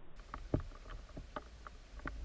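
Underwater sound picked up through a submerged camera: irregular small clicks and knocks over a steady low rumble, with a stronger knock about half a second in.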